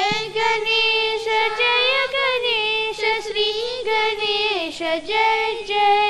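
A child singing a devotional prayer song through a microphone, in long held notes that glide up and down.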